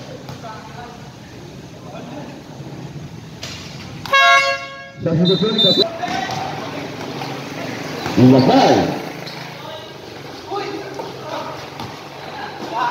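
A horn sounds once, a steady buzzing tone lasting just under a second, about four seconds in over the low hubbub of the court. A brief high-pitched tone follows about a second later.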